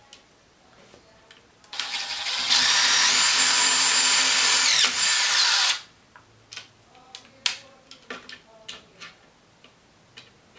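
DeWalt Atomic cordless drill driving a screw through a metal D-ring hanger into a wooden stretcher bar. The motor whine starts about two seconds in, climbs in pitch to a steady run for about three seconds, then winds down and stops. A few light clicks follow.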